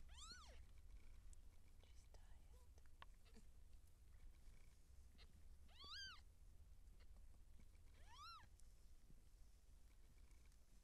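Cat mewing faintly: three short high-pitched mews, each rising then falling in pitch, one at the start, one about six seconds in and one about eight seconds in.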